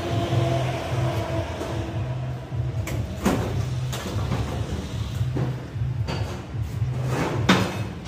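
Background music with a low, pulsing beat, over which several sharp metal knocks sound: about three seconds in, twice more past the middle, and a loudest one near the end.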